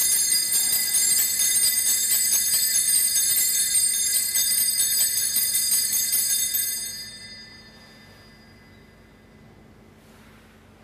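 Altar bells, a cluster of small high-pitched sanctus bells, shaken in a rapid continuous ring for about six and a half seconds, then dying away. They mark the elevation of the consecrated chalice at Mass.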